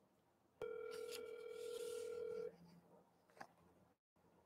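Smartphone ringback tone heard over the phone's speaker: one steady ring of about two seconds while the dialled number rings at the other end.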